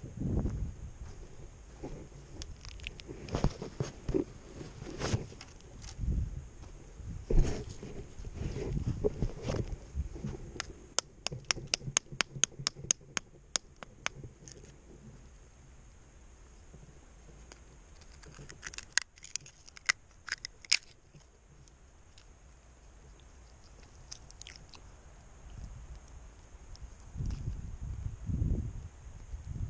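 Crunching, scraping and handling noises as mussel shells are cracked open and the mussel is worked onto a fishing hook. A quick run of sharp clicks comes about eleven seconds in, with a few more near the twenty-second mark.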